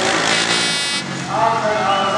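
A sand-track racing motorcycle's engine revving hard for about a second, cutting off abruptly, as the rider lifts the front wheel into a wheelie. Voices from the crowd carry on around it.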